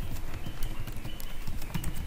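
Computer keyboard keystrokes: a run of irregular key clicks as text is deleted and retyped.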